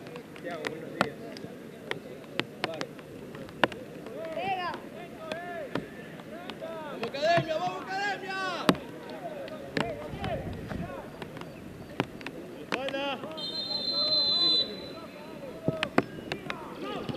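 Players shouting across an outdoor football pitch, then about 13 seconds in a referee's whistle blows once, a steady high tone lasting just over a second, signalling the free kick to be taken. Sharp knocks sound now and then throughout.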